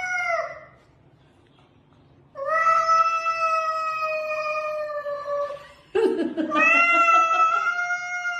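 A cat yowling in a spat with another cat: three long, steady drawn-out calls, a short one that fades out about half a second in, a long one of about three seconds, and another starting about six seconds in.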